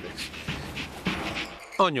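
A dog panting in quick, repeated breaths.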